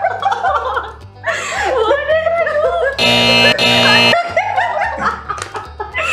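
Women laughing over background music with a repeating low bass line. About three seconds in, a loud held tone sounds for about a second, with a brief break in the middle.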